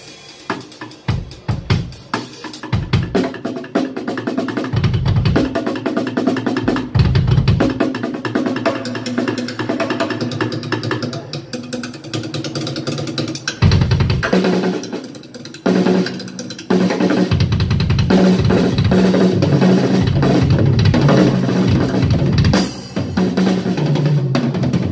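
Drum kit played live, fast: dense snare and tom fills with cymbals. There is a short drop-off about two-thirds of the way through, then a heavier run with bass drum strokes packed underneath.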